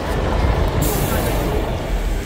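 Bus engine running with a low rumble, and a hiss that starts just under a second in and carries on.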